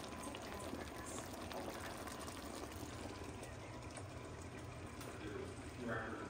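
Faint, steady stovetop sound of braised short ribs and their sauce simmering in an enamelled Dutch oven on a gas range, with a low hum underneath.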